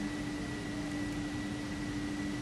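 Steady hum and hiss with a constant low tone and a faint high whine, the idle background of a powered-up injection moulding machine with its heaters on and its hydraulic motor not yet running.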